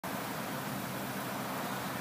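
Steady hiss of distant road traffic.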